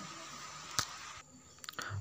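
Quiet background hiss between spoken phrases, with one sharp click a little under a second in and a few small clicks just before the voice resumes.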